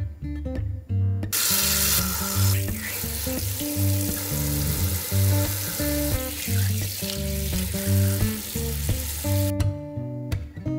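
Kitchen tap spraying water onto leafy greens in a stainless steel sink, a steady hiss that starts about a second in and cuts off shortly before the end, with acoustic guitar background music underneath.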